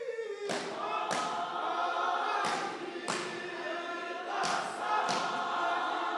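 A congregation singing a hymn together in held notes, with sharp beats two at a time about every two seconds.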